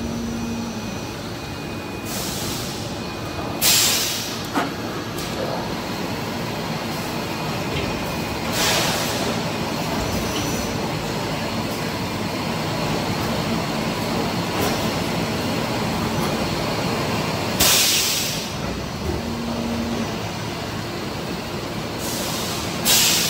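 PET preform injection moulding machine with take-out robot running through its cycle: a steady machine noise with loud, short hisses of compressed air about four, nine and eighteen seconds in.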